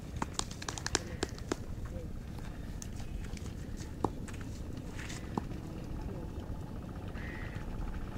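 Distant voices of people outdoors over a steady low rumble, with scattered light clicks, most of them in the first second and a half.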